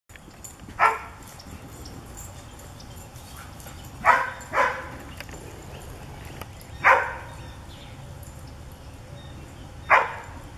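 Standard poodle barking up into a tree at squirrels to drive them off: loud, sharp single barks a few seconds apart, with a quick double bark about four seconds in.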